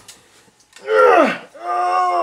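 A person crying out in pain twice: a short cry about a second in that falls in pitch, then a longer held cry that falls away at the end.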